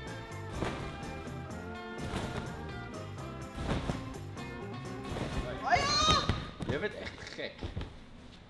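Background music with a steady beat. About six seconds in, a loud cry from a voice, sliding up and down in pitch.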